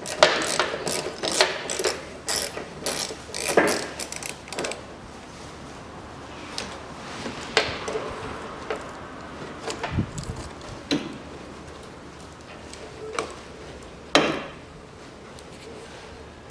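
Wires and connectors of a car's wiring harness being handled: a dense run of clicks and rattles for the first few seconds, then scattered single clicks and knocks, with one louder knock near the end.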